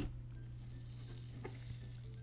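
Fluffy green cloud slime, made with instant snow, being poked and stretched out of its container, giving faint crackles about a second and a half in. A sharp click comes at the very start, over a steady low hum.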